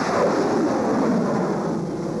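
Cruise missile launch: the rocket booster's steady rushing noise as the missile climbs away.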